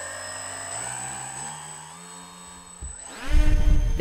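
The twin brushless electric motors of a foam fixed-wing UAV spin up: a whine that rises in pitch over about two seconds, then holds steady. Near the end there is a loud low rumble.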